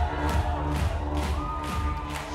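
Electronic band playing live through a club PA, heard from within the crowd: a steady drum beat over synth bass and keyboard chords, with a short held synth note near the end.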